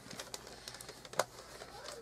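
Wrapping paper rustling and crinkling as it is pulled tight and pressed around a boxed gift, with a few faint sharp crackles, the loudest a little over a second in.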